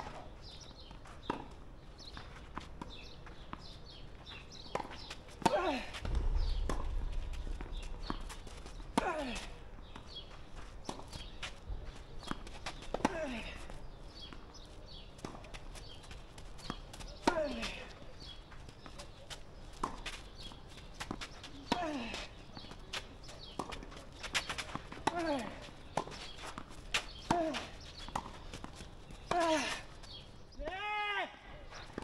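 Tennis rally on a clay court: sharp pops of the ball off the rackets and scuffing steps. The near player gives a short falling grunt with each of his strokes, about every four seconds. A low rumble runs for a few seconds near the start.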